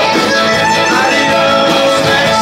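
A live Tex-Mex band playing: button accordion, electric guitars and drums, loud and steady.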